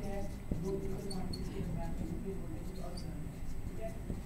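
Felt-tip marker squeaking on a whiteboard in short, irregular squeaks as words are written, over a low steady hum.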